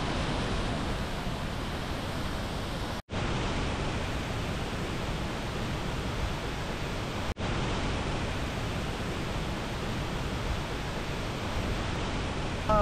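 A large waterfall's steady rushing noise, broken by two sudden short dropouts about three and seven seconds in where clips are cut together.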